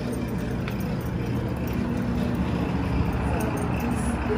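Steady rumble of city traffic below a high-rise rooftop terrace, an even outdoor noise with no distinct events.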